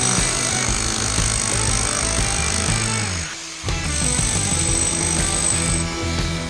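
Rotary hammer chiseling concrete from around a wooden stake, with background music under it. The hammering breaks off briefly a little past halfway, then starts again.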